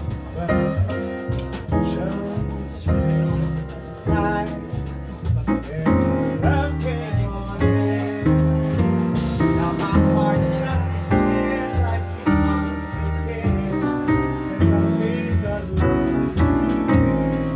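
Live jazz piano trio playing: acoustic piano over double bass, with drums and cymbals keeping time.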